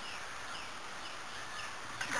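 Small birds chirping: a series of short, falling chirps, a few each second, over faint background hiss.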